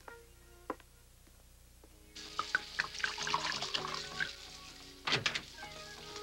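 Wine pouring from a bottle into a glass, starting about two seconds in, over background music. There is a sharp knock near the end.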